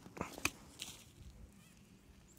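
A grease gun's coupler being pushed onto a zerk fitting on a Kubota LA525 loader arm: faint metal clicks, two sharp ones in the first half second.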